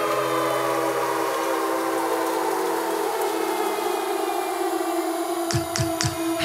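Instrumental passage with no singing: a bowed electric cello holding long, sustained notes in a slow, steady chord, a lower note dropping out about a second in. A few short percussive hits come in near the end.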